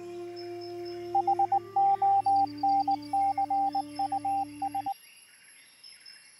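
Background music of held, droning tones with a radio-style Morse code tone beeping over it in short and long pulses; both cut off suddenly about five seconds in.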